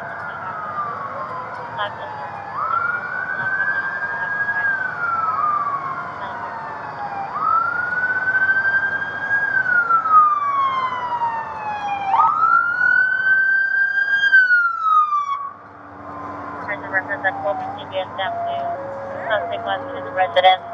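Emergency vehicle siren wailing, a slow rise and fall repeating about every five seconds, with fainter sirens overlapping behind it. The nearest siren stops about three-quarters of the way through.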